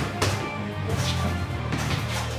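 Background music with a heavy bass line, over which a few sharp smacks of boxing gloves landing on focus mitts are heard, the clearest just after the start.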